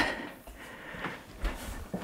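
Faint handling and movement noise while the camera is carried, with soft low bumps about a second and a half in and a short tap near the end.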